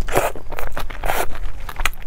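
Close-miked chewing of kimchi, a few separate wet, crunching chews about half a second apart, with kimchi leaves handled in plastic-gloved hands.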